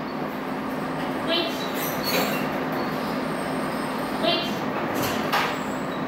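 Metal wire exercise pen rattling and clanking as its panels are unfolded and set up, with a few sharp clanks. Short high squeaks recur about every three seconds over a steady hum.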